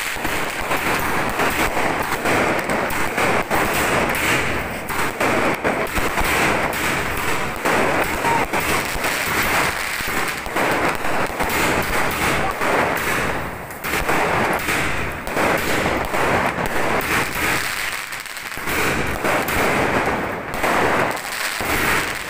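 Fireworks going off overhead in a dense, unbroken run of crackles and bangs, with a couple of brief lulls about two-thirds of the way through.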